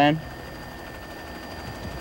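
Faint steady drone of an aircraft engine, even and unchanging.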